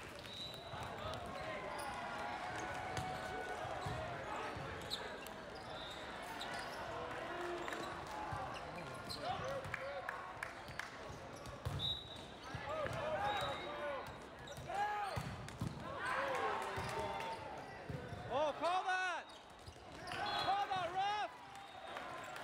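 A volleyball rally: sharp thuds of the ball being served and hit, over a steady murmur of voices. Louder shouts and calls come in bursts during the second half as the rally plays out.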